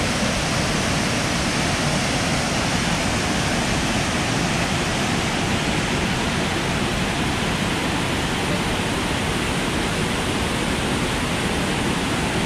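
Running Eagle Falls pouring from its cliff-face cave into the plunge pool: a steady, unbroken rush of falling water.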